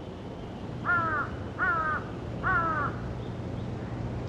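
A Taiwan blue magpie gives three short calls, each dipping in pitch at its end, spaced under a second apart and starting about a second in.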